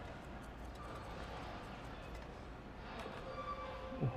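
Quiet handling of engine parts: a few light clicks as a small bolt and a sheet-metal heat shield are fitted by hand, over faint room noise.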